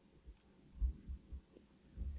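Faint room tone with a few soft, low thumps in the middle, the clearest a little under a second in.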